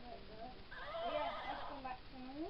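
A horse whinny: one wavering, warbling call of about a second near the middle, over quiet background music.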